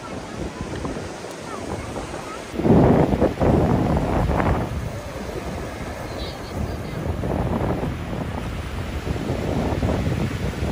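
Ocean surf breaking and washing up the shore, with wind buffeting the microphone. It gets much louder about a quarter of the way in and is loudest for the next couple of seconds.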